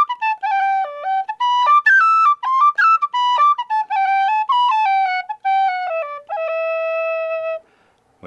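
Brass tin whistle (pennywhistle) played solo: a quick melodic phrase of short stepped notes with clean, bright tone, ending on one long held low note that stops shortly before the end.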